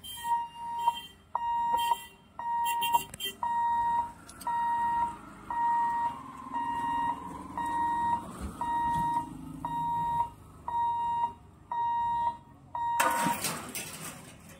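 Railway level-crossing warning alarm beeping: a single steady high electronic tone, repeated a little more than once a second. It stops near the end with a short loud rush of noise.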